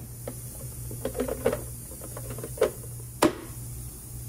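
A low steady hum with scattered light clicks and knocks; one sharp click a little past three seconds in is the loudest.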